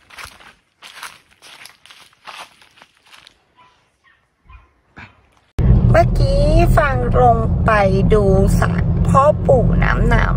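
Footsteps crunching and rustling on dry fallen leaves, a few steps a second, fading out over the first few seconds. About halfway through, a loud steady low rumble of a car's engine and road noise heard inside the cabin sets in suddenly, under a woman's voice.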